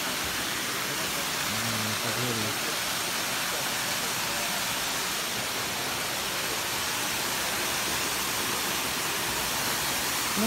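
Steady rushing of a small waterfall and stream pouring over rocks into a pool. A brief low voice sound comes about two seconds in.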